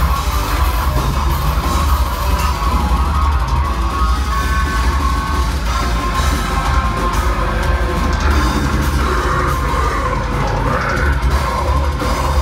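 A technical deathcore band playing live at full volume: distorted guitars and a drum kit in a dense, unbroken wall of sound with a heavy low end.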